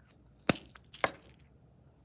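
Plastic test-strip vial being opened and closed to take out a strip: two sharp snaps about half a second apart, with light rattling of strips between.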